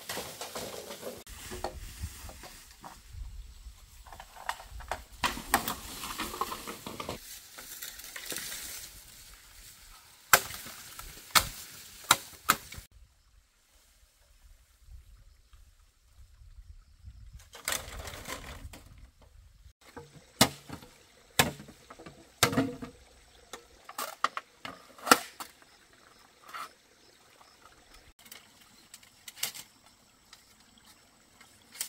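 Cut bamboo poles being handled among dry undergrowth: rustling and crackling at first, then two spells of sharp hollow knocks as poles strike one another, with a quiet pause of a few seconds between them.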